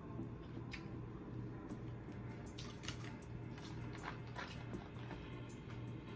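Chewing and wet mouth sounds while eating seafood boil, with small irregular clicks scattered through.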